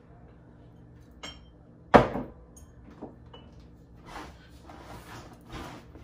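Kitchen handling noises as a forgotten bottle of Worcestershire sauce is fetched and added. One sharp knock about two seconds in is the loudest sound, with lighter clicks around it and a few short rustling sounds near the end.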